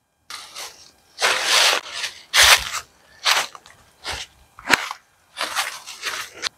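Footsteps crunching through dry fallen leaves, about one irregular step a second, with one sharper crack about three-quarters of the way through.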